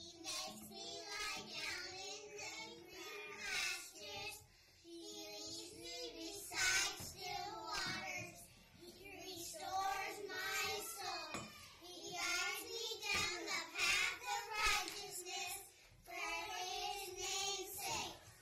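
Young children's voices singing memorised words together, in phrases with brief breaks between them.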